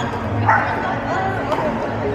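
Voices and calls in an echoing indoor pickleball hall, with a short loud call about half a second in. A plastic pickleball paddle gives a sharp click off the ball about a second and a half in.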